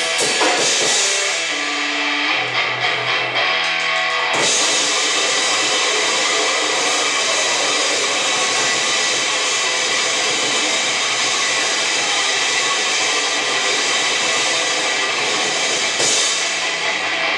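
Live grindcore band playing distorted electric guitar and drums at full volume. A sparser passage of held guitar notes and drum hits runs for the first four seconds or so, then the full band comes in suddenly with a dense, unbroken wall of sound.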